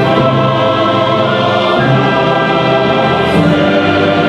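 Mixed SATB choir singing with an orchestra, holding sustained chords that change twice.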